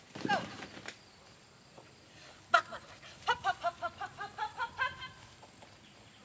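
Dog barking in quick runs of short, high barks, about four a second, with a sharp snap about two and a half seconds in.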